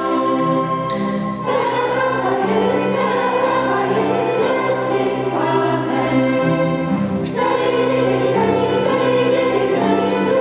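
Mixed school choir of boys and girls singing, accompanied by violins; the voices come in fuller and louder about a second and a half in.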